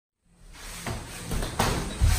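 Gloved punches and kicks thudding onto gloves and guards in kickboxing sparring, three sharp knocks in under a second as the sound fades in.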